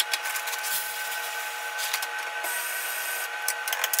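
Electric espresso grinder running a purge cycle to bring fresh beans into the grinding chamber: a steady motor whine over the gritty noise of beans being ground.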